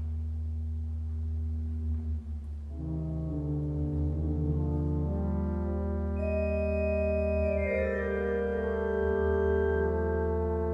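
Pipe organ playing slow sustained chords over a held low pedal note. About three seconds in, more notes enter above and the sound thickens and slowly grows louder.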